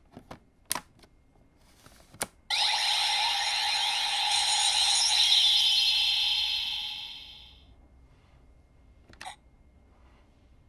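Plastic clicks as a Zolda Advent Deck is slid into a Bandai CSM V Buckle toy belt. The buckle then plays a loud, buzzy electronic sound effect through its small speaker. The sound starts suddenly and fades out after about five seconds, and a single click follows near the end.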